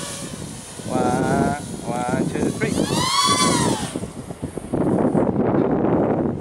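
Walkera Furious 215 racing quadcopter's 2500KV brushless motors and three-blade props whining in flight, in two short spells and then one longer whine whose pitch climbs and falls as the throttle is pushed and eased. Near the end a rush of wind noise on the microphone takes over.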